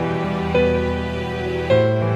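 Background music of slow, held chords, with new notes coming in about half a second in and again near the end.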